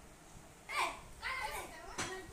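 Children's voices: a loud, high call that falls in pitch a little under a second in, then children talking.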